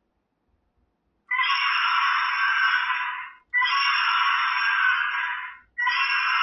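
A shrill, animal-like sound effect: the same clip of about two seconds is played three times in a row, starting about a second in.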